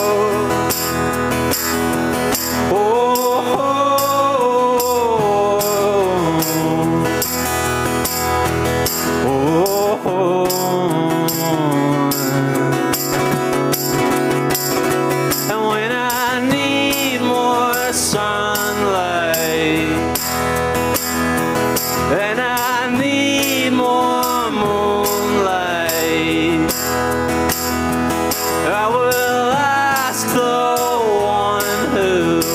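Live acoustic music: a strummed acoustic guitar and a man singing, with a hand shaker keeping a fast, steady rhythm.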